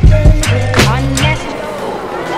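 Background music: a pop song with a heavy bass line and a drum beat, the bass dropping out about one and a half seconds in.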